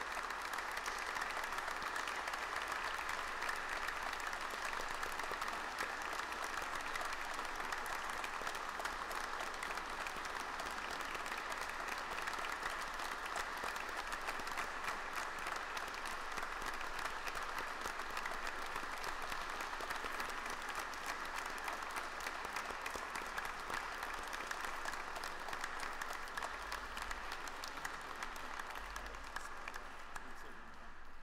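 Church congregation applauding steadily, a dense even clapping that fades a little near the end.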